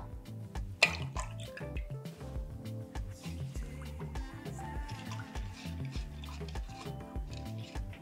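Quiet background music with a steady, repeating bass line, with faint sounds of sugar and liquid being poured and stirred in a plastic jug and one light click about a second in.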